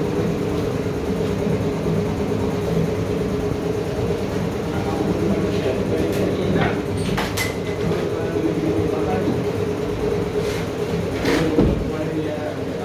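Furniture hardware being worked over a steady background hum: a wooden drawer slides out on metal drawer runners with a few clicks about six seconds in, and near the end a flip-down shoe-rack shelf is tipped open with a knock.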